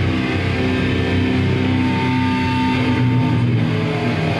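Live heavy metal band, loud distorted electric guitars holding long sustained notes. A higher held tone comes in about two seconds in and stops shortly before the end.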